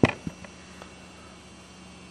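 A steel pinball strikes a piece of original Williams pinball playfield plastic in a drop test, one sharp crack at the start, followed by a few faint ticks as the ball falls away. The plastic takes the hit without breaking.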